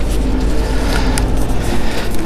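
Wind buffeting the handheld camera's microphone: a steady, loud low rumble.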